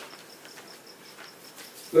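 A cricket chirping steadily, a regular run of short high-pitched pulses at about seven a second, with a single sharp click at the start.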